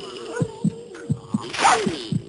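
A man laughing in quick, low pulses, about three or four a second, with a louder breathy burst about three quarters of the way through.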